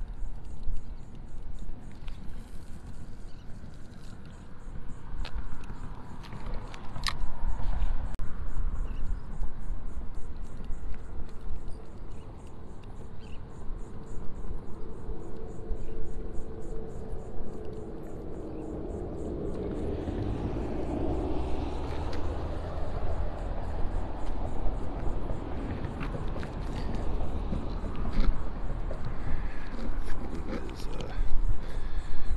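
Steady low rumble of wind on the microphone by open water, with a faint hum that swells and bends in pitch in the middle before fading into a broader hiss.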